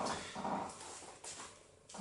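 A man's quiet, wordless murmur, then a faint knock just past the middle.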